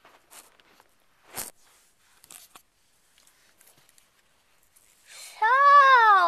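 A few brief rustles and clicks of toys or the camera being handled, then, about five seconds in, a girl starts talking in a high, sing-song play voice.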